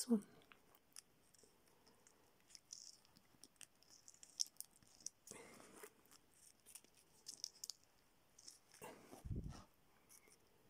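Faint scattered clicks and rustles of a plastic clip-on ferrite clamp being handled and worked onto a mains cable, with a dull low thump a little after nine seconds.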